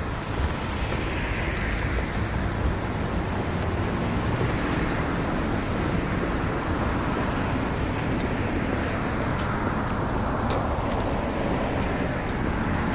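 City street traffic noise: a steady rush of road traffic, with vehicles swelling past near the start and again towards the end.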